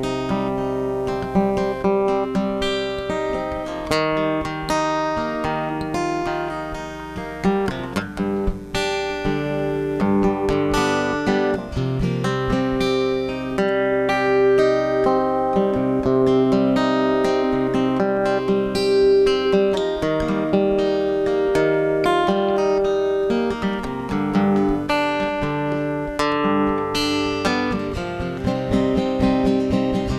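Solo acoustic guitar playing the instrumental introduction to a song, picked and strummed chords with no singing yet.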